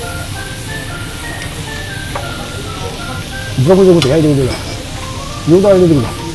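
Offal sizzling on a yakiniku grill as a steady hiss under light background music with a stepping melody. Two loud, drawn-out 'mmm' hums of relish from a man chewing rise over it, one about three and a half seconds in and one near the end.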